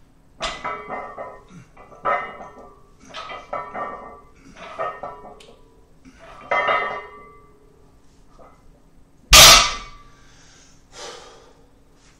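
A man grunting and exhaling hard on each rep of heavy bent-over barbell rows, about six strained grunts roughly one a second. About nine and a half seconds in, the loaded barbell is set down on the floor with a loud metallic clank, followed by a heavy breath.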